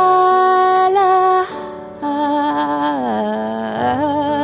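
A woman singing a slow ballad over piano, holding long notes that hang in the air; in the second half her line slides down, stays low briefly, then rises again near the end.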